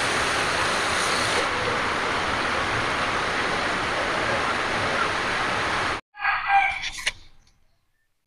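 Turmeric-coated fish pieces frying in hot oil in a wok, a steady sizzle that cuts off abruptly about six seconds in. A brief voiced sound follows.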